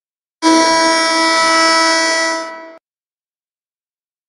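End-of-game horn sounding one steady blast of a bit over two seconds, starting and stopping abruptly: the full-time signal with the clock run down to zero in the fourth quarter.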